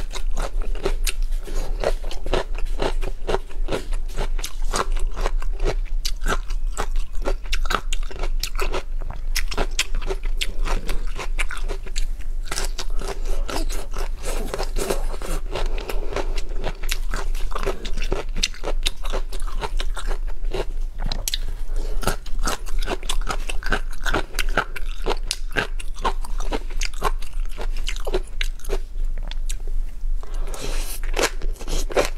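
Close-miked chewing of tobiko (flying fish roe) on crisp raw onion slices: a continuous run of sharp crunches and small crackles as the roe pops and the onion breaks between the teeth.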